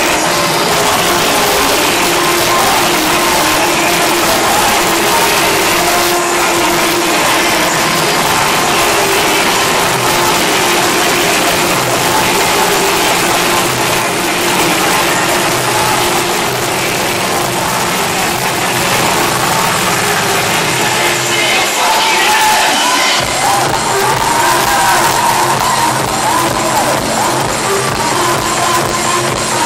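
Loud electronic dance music from a DJ set over a PA system, recorded from within the crowd, with crowd voices and cheering mixed in. About three-quarters of the way through the bass drops out for a second or so, then a melody line comes forward.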